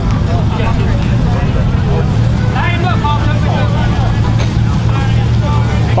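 V8 engines of a Chevrolet Camaro ZL1 and a Jeep Grand Cherokee SRT idling side by side at a drag-race start line: a steady, loud low rumble with no revving. Faint voices are heard in the background.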